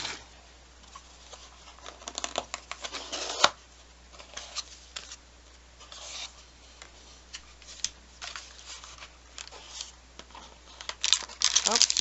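Cardboard mailer box being opened by hand: scattered scraping and rubbing of cardboard as the taped lid is slit and worked open, with a sharp click about three and a half seconds in. Louder rustling of packaging comes near the end as the lid comes up.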